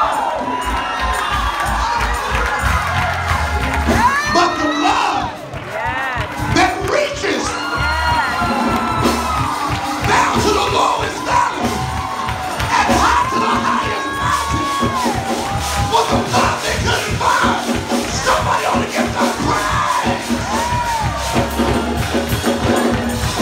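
Church congregation shouting and cheering in many overlapping voices, with whoops rising and falling in pitch, over music.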